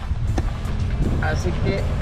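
Background music with a singing voice over the low rumble of a car driving.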